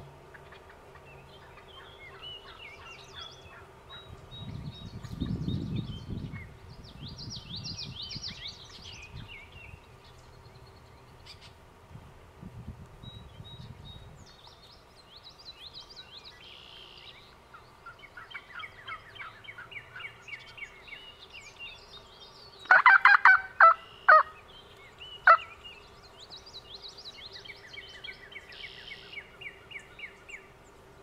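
A wild turkey gobbler gobbling: a rapid, loud rattling series about 23 seconds in, followed by two short single notes, over songbirds chirping.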